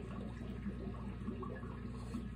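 Dwarf rabbit chewing a piece of dried apple: faint, irregular crunching ticks over a steady low hum.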